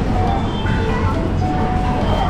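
A child-seat shopping cart rolling across a supermarket floor, its wheels making a steady low rumble, with faint store music in the background.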